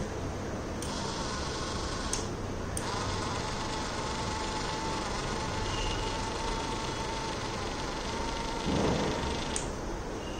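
Small 3.5 rpm DC gear motor whining steadily as it turns the antenna mount, for about six seconds. It is started and stopped with sharp rocker-switch clicks, and there is a short thump near the end.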